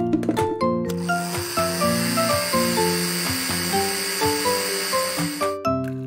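Instrumental children's music, with a kitchen blender running over it from about a second in until it cuts off shortly before the end.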